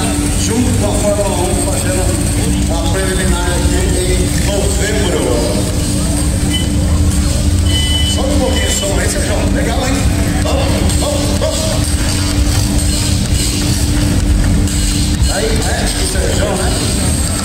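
Background music and indistinct voices over a steady low rumble, with classic air-cooled Volkswagen Beetles rolling slowly past.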